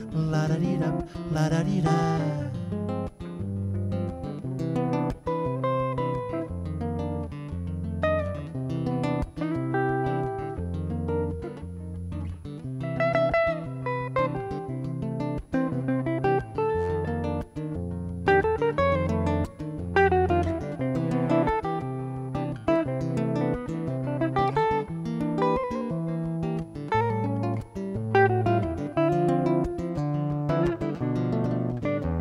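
Instrumental passage for two guitars: an acoustic guitar strumming chords under a hollow-body archtop electric guitar picking a single-note melodic line.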